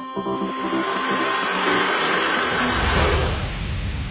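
Soundtrack music with steady keyboard-like notes, swamped by a rising hissing noise that is loudest about two to three seconds in. It gives way to a low rumble near the end.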